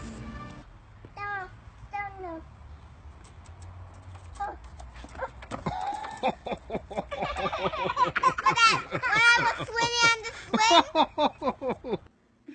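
A child's two short, falling calls, then from about five seconds in a long run of quick, repeated laughter that is the loudest part.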